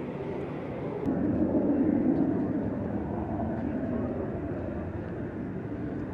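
Distant jet aircraft rumble that swells suddenly about a second in and then slowly fades.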